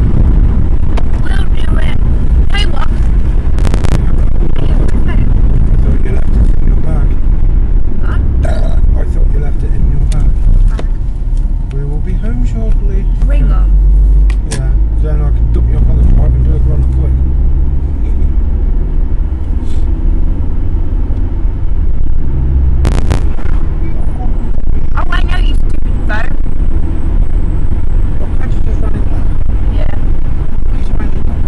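Car interior noise while driving: a loud, steady low rumble of engine and road, with faint voices now and then.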